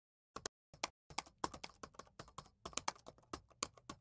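Faint computer keyboard typing: a couple of separate clicks, then a quick, steady run of keystrokes for about three seconds.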